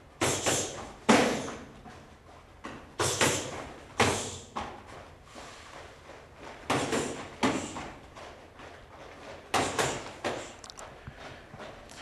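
Taekwondo sparring-drill strikes: gloved punches and kicks landing on a partner's raised gloves, with feet slapping the foam mat, in four separate flurries about three seconds apart, each a pair of sharp hits.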